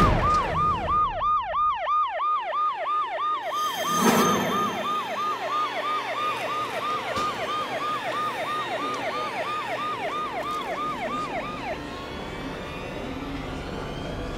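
Police car siren on a fast yelp, each cycle falling in pitch, about three cycles a second; it cuts off near the end. A single sharp hit sounds about four seconds in.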